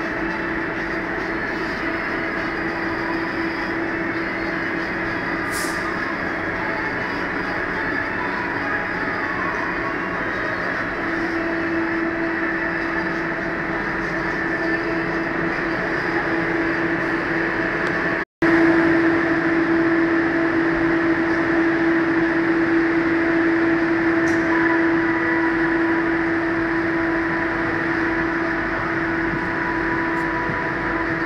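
Steady interior noise of a Kuala Lumpur Airport Express train carriage: an even rumble with a constant hum over it. The sound cuts out for a split second a little past halfway and comes back slightly louder.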